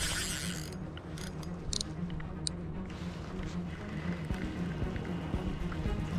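Spinning reel being cranked steadily, its gears running in an even rhythm, as the angler reels in a hooked fish on a bent rod.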